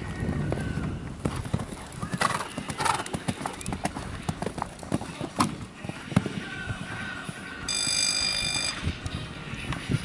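Horse's hooves thudding as it canters and jumps over a sand arena, an irregular run of knocks. About eight seconds in, a steady electronic beep sounds for about a second.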